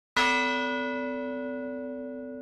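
A single bell-like musical note struck once just after the start, ringing with a clear pitch and fading slowly.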